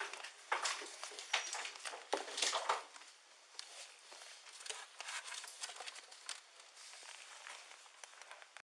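Handling noise on a police body-worn camera's microphone: irregular knocks, taps and rustling as the wearer moves and handles objects, the loudest knocks falling in the first three seconds.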